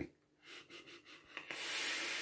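Faint breathing and mouth sounds. About one and a half seconds in, a steady hiss starts as a draw is taken on a vape's rebuildable dripping atomizer: air pulled past the firing coil as it vaporizes the e-liquid.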